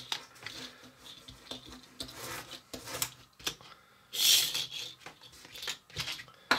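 Miniature pull-back toy car being dragged back on the tabletop to wind its spring motor, with rubbing and quick clicking, then released: a short, loud whir about four seconds in as the motor spins the wheels and the car runs up the plastic track. The car fails to make it all the way round the loop.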